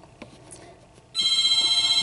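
A telephone ringing: after a quiet first second, one long ring starts, a steady electronic tone with several high pitches. The phone keeps ringing unanswered.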